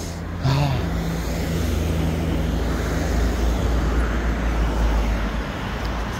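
A motor vehicle's engine running close by: a steady low rumble that grows a little louder through the middle and eases slightly near the end.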